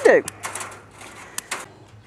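A few light, sharp clicks and a faint rustle, the kind made by handling wire netting or the camera, after a spoken word at the start.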